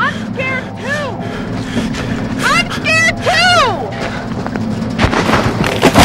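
A person's voice crying out in a series of wordless, rising-and-falling wails over a steady low drone. A loud crash-like burst comes about five seconds in.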